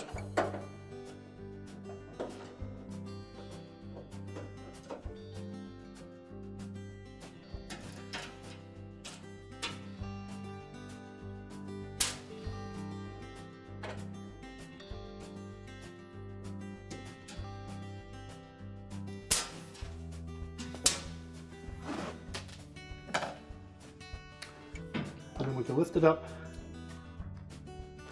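Soft acoustic guitar background music, with a few sharp clicks and knocks from a screwdriver working the screws on the back of a washer's metal top panel.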